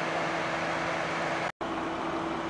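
Steady background hiss with a low, even hum. It drops out completely for an instant about one and a half seconds in, where the recording is spliced between shots, then carries on unchanged.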